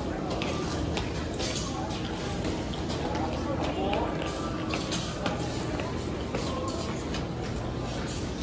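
Busy airport terminal concourse ambience: indistinct chatter of passing travellers and footsteps on tile, with rolling luggage, over a steady low hum of the hall.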